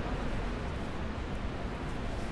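Steady city street noise: an even low rumble with no distinct events standing out.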